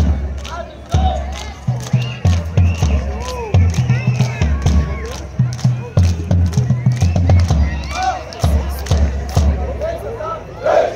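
Marching band drums playing a steady beat: deep bass drum strokes a few times a second with sharp snare or cymbal hits, and voices over the top.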